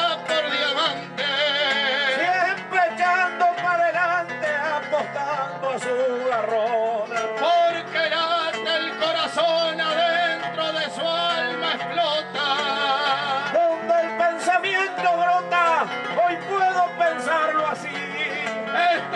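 Argentine folk singing with guitar accompaniment; the singer's held notes waver in pitch.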